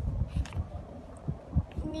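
Irregular low thumps and rumble on the microphone, several soft knocks a second.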